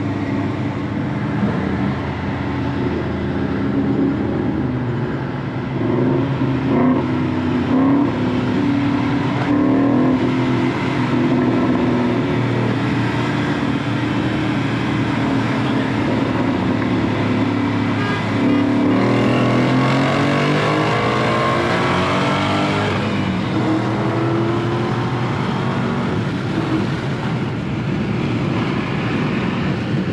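A manual Dodge Challenger Hellcat's supercharged 6.2-litre V8, heard from inside the cabin, pulling hard in a highway roll race from about 45 mph. The engine note climbs steeply about two-thirds of the way through.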